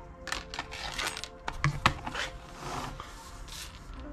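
Small ceramic bonsai pot handled and set down on a plastic turntable: a series of light knocks and clinks, the loudest a little before the middle, over soft background music.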